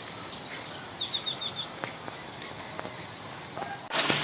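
Insects trilling steadily at a high, even pitch, with a quick run of five high chirps about a second in. The trill stops suddenly just before the end.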